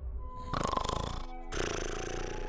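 Snoring of a sleeping character: a rattling snore about half a second in, then another breath starting about a second and a half in. Soft background music with held notes plays underneath.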